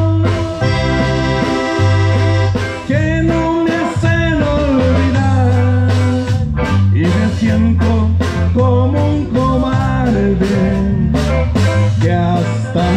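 Live norteño-style band playing an instrumental passage: accordion and guitar melody over a strong bass line, drums and keyboard. A held chord in the first few seconds gives way to a moving melody.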